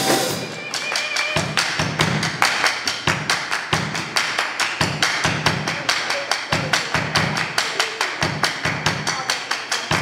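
Pop band music with no vocals: a fast, even percussive tick over a recurring low drum beat.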